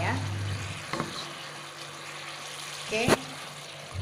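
Fish in chilli sambal sizzling in a pan over low heat, a soft steady hiss. A light click comes about a second in, and a sharp knock, the loudest sound, comes about three seconds in.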